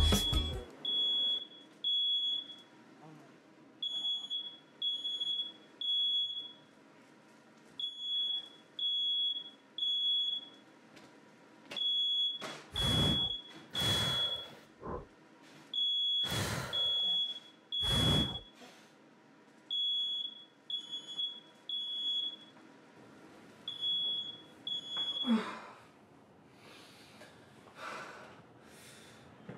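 Smoke alarm sounding its high-pitched beeps in repeating groups of three, set off by burning food in a toaster oven. In the middle come several loud whooshes.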